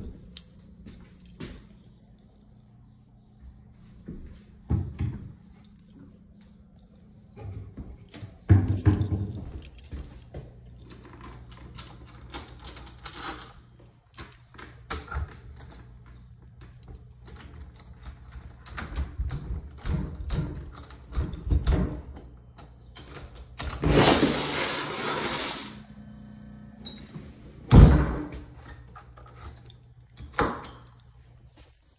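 A door being worked by its knob: the latch and knob rattling and the door knocking and thudding in its frame, with a loud rushing scrape for about two seconds and a sharp, heavy thud soon after, near the end. A steady low hum runs underneath.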